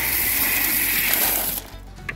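Dried yellow corn kernels poured from a bucket onto feed pellets in a metal trough: a steady rattling hiss that stops about a second and a half in.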